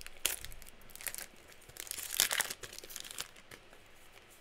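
Foil wrapper of a Weiss Schwarz booster pack crinkling as it is torn open and pulled off the cards: an irregular run of crackles, loudest a little past the middle.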